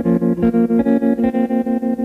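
Instrumental intro of a slow song: electric guitar chords with a fast, even tremolo pulse, played before the vocal comes in.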